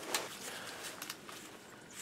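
Faint rustling and a few light clicks of old papers and a small notebook being handled and pulled out of a truck's glove box.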